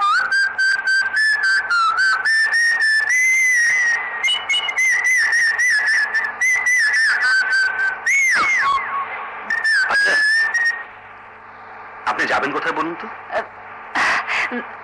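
A person whistling a lively tune: clear, high notes, many of them short and quickly repeated, with a few swooping downward slides about eight to ten seconds in. The whistling stops about eleven seconds in.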